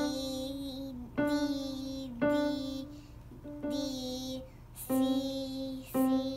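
Electronic keyboard played one note at a time in a slow beginner exercise, about one note a second: three D's then two C's. A woman calls out each note name in time with the keys.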